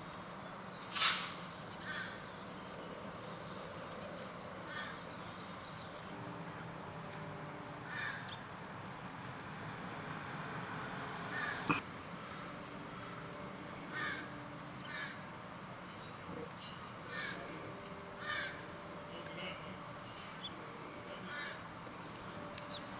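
Short bird calls repeating at irregular intervals, roughly a dozen in all, over a faint steady background, with one sharp click near the middle.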